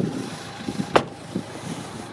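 A single sharp click or knock about a second in, over quiet outdoor background noise with a few faint soft knocks.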